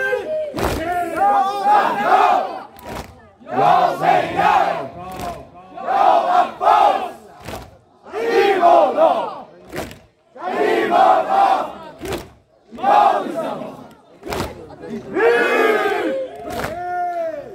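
A crowd of men chanting together in loud, short shouts about every two seconds, with sharp slaps between the shouts as they strike their chests in unison. This is Shia Muharram chest-beating (sineh-zani) mourning.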